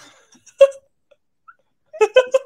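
A woman's single short, high-pitched squeal of laughter about half a second in, between near-silent stretches of laughing.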